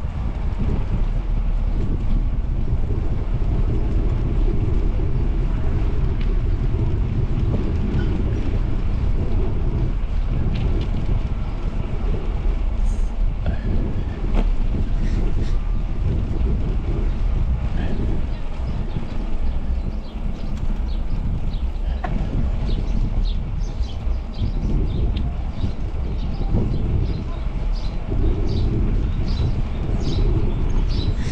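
Steady low wind rumble on a ride-mounted action camera's microphone from riding along a road. Faint short high chirps come in the second half.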